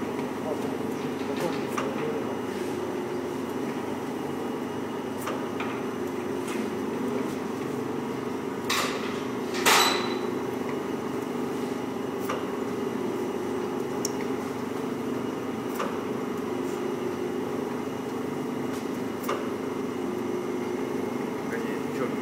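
Daub Slim vacuum dough divider running: a steady hum from its built-in vacuum pump, with a short knock every second or two as the dividing mechanism cycles. Two louder, sharper knocks come about nine and ten seconds in.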